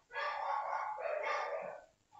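Whiteboard marker squeaking against the board in two drawn-out strokes, each a pitched squeal lasting close to a second, as digits are written.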